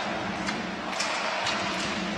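Ice hockey arena sound during live play: a steady wash of crowd noise and skates on the ice, with a couple of sharp clicks of sticks or the puck about half a second and a second in.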